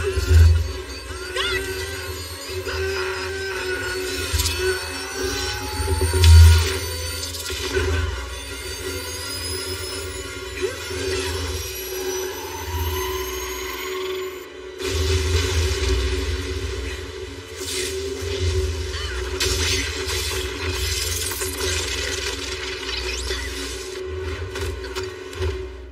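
Action-film soundtrack: loud score music mixed with crashing and shattering effects, with a brief drop about fifteen seconds in before it resumes.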